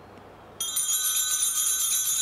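A cluster of small altar bells (sanctus bells) shaken rapidly, starting suddenly about half a second in and ringing on steadily with a fast shimmer, marking the priest's communion at Mass.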